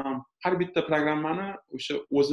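Speech only: a person talking in Uzbek, in short phrases with brief pauses.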